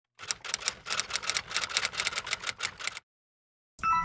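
Rapid, irregular clicking, about six clicks a second, that cuts off dead about three seconds in. A chiming, glockenspiel-like melody starts just before the end.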